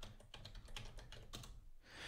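Faint typing on a computer keyboard: a quick run of key clicks as a word is typed in.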